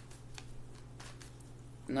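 Tarot cards being shuffled and handled in the hands: a few soft, scattered card clicks.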